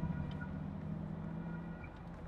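Mercedes-AMG G63's twin-turbo V8 and tyres heard from inside the cabin while driving: a steady low drone over road rumble.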